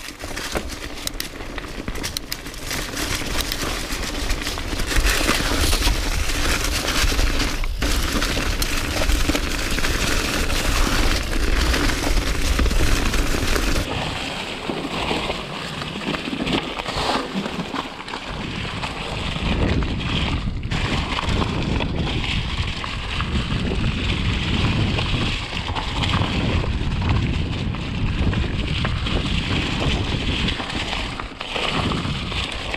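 Mountain bike descending a leaf-covered dirt trail: tyres rolling and crackling through dry leaves and the bike rattling over rough ground, with wind buffeting the action-camera microphone. The sound changes about halfway through.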